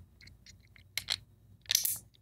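Small pins being pushed through a 3D-printed plastic airbrush mask to close its seam: a few short plastic clicks and scrapes, faint at first, louder about a second in and again near the end.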